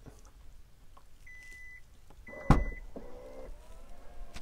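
Hyundai Tucson plug-in hybrid's power liftgate opening: two short warning beeps, a sharp latch click, the loudest sound, then the steady hum of the liftgate motor, rising slightly in pitch as the gate lifts.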